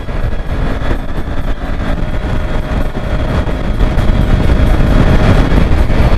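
Kawasaki Ninja 400 motorcycle ridden at road speed: wind rushing over the camera microphone with the engine running underneath, getting louder over the last couple of seconds.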